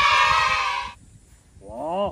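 A person's loud, drawn-out, wavering vocal cry that stops about a second in, followed near the end by a shorter call rising in pitch.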